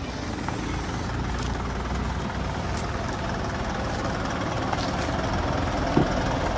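A parked minibus's engine idling steadily, a low continuous rumble.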